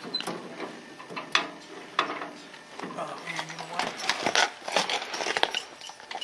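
Irregular metal clicks and clanks, sharp and uneven, coming thickest in the second half, with voices talking in the background.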